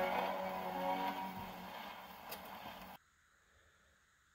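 A 78 rpm record playing on an acoustic phonograph, its reproducer sounding the last held notes of a 1929 vocal dance record. The notes die away under surface hiss with a click near the end, and the sound cuts off suddenly about three seconds in.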